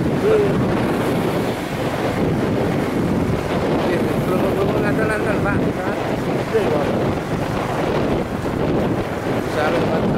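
Wind rushing over the microphone on a moving motorcycle taxi, with the bike's road and engine noise running steadily beneath it.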